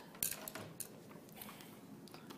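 A few light metallic clicks and taps in the first second, from jewellery tools and silver wire being handled on a work surface, then quiet room tone.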